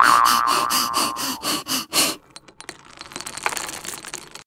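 A person laughing in a quick string of bursts, about four a second, for around two seconds. Faint scattered clicks follow.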